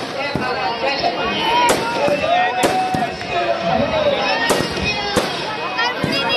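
Firecrackers in a burning Ravana effigy going off in about five sharp bangs, over a crowd's voices and shouting.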